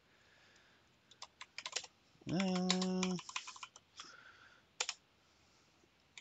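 Typing on a computer keyboard: a few short runs of quick keystrokes. About two seconds in, a voice holds a steady hummed 'mmm' for about a second.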